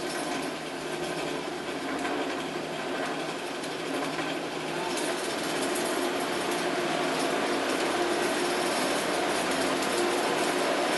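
DC electric motor turning a chipper shredder rotor, run on 18 volts through a speed controller, with a steady mechanical hum. It gets gradually louder from about halfway through as the throttle voltage is raised and the motor speeds up past 800 RPM.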